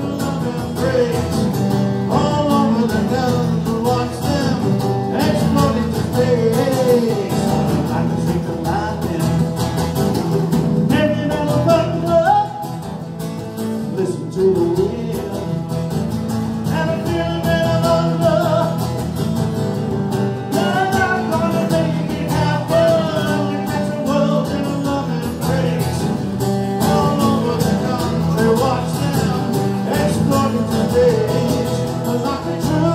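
A live song: a solid-body electric guitar strumming chords while a man sings into a microphone, amplified through a small PA.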